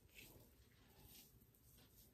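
Near silence, with a few faint, brief rustles of hands working mousse through hair.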